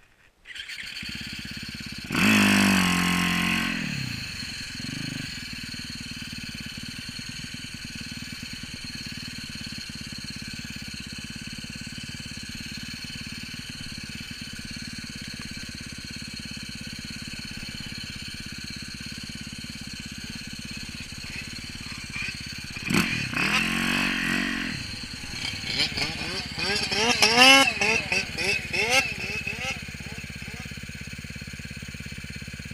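Yamaha YZ450FX snowbike's single-cylinder four-stroke engine. It revs sharply about two seconds in and falls back, runs steadily for a long stretch, then revs up and down in a series of throttle blips near the end.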